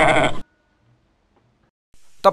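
A bleat with a quivering pitch that stops abruptly about half a second in.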